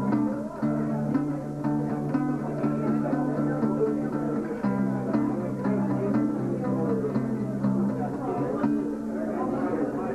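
Acoustic guitar strummed in held chords, the chord changing about every four seconds.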